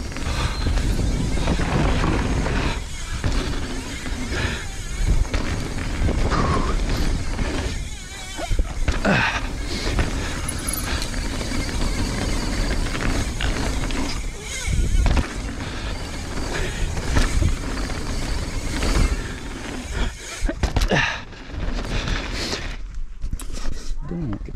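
Mountain bike descending a dirt trail at speed: a steady rush of tyre noise and wind on the microphone, broken by frequent knocks and rattles as the bike hits bumps.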